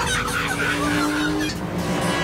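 Cartoon robot monkeys chattering: a swarm of many quick, overlapping high chirps, thickest in the first second and a half, over a steady low held tone.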